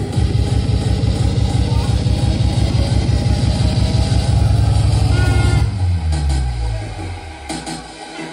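Hardcore dance music played loud through a club PA, driven by a fast kick drum beat. About six seconds in the kick drops out and a bass tone falls in pitch into a breakdown.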